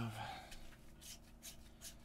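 Gloved hands handling and tilting a glass jar of red phosphorus powder, making a run of faint, short rustles and scrapes.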